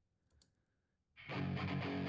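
Near silence with a couple of faint clicks, then a little over a second in the soloed electric guitar track of a multitrack recording starts: distorted guitar, panned left, with a thick, sustained sound the listener calls fat.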